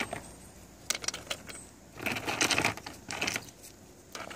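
Lumps of lava rock clicking and scraping against each other and the terracotta pot as they are shifted by hand: a couple of light clicks, then two short bouts of clattering.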